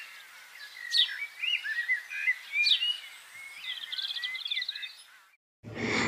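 Small birds chirping and warbling: short, high, quick calls repeated every second or so, with a rapid trill about four seconds in. The sound cuts off suddenly shortly before the end.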